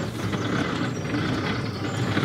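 Wind buffeting the microphone, a steady rough rumble.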